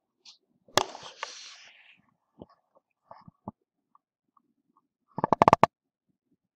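Sharp knocks and taps: one loud strike about a second in with a short hiss after it, a few scattered taps, then a rapid run of about eight strikes near the end.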